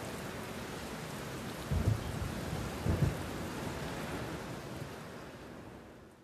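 Steady hiss of rain with two short low booms of thunder, about two and three seconds in, fading out at the end.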